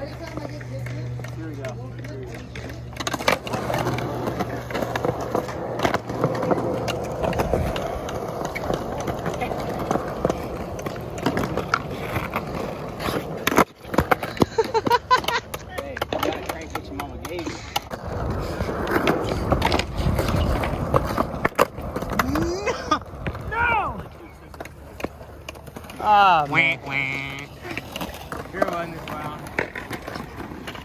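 Skateboards rolling on concrete, with the sharp clacks of boards being popped and landed during flat-ground tricks. Voices and laughter come in near the end.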